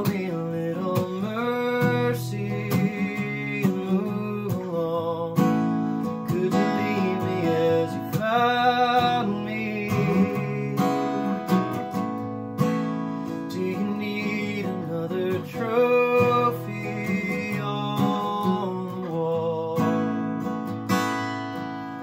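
Acoustic guitar strummed and picked through an instrumental passage between verses, the chords ringing on with a steady pulse.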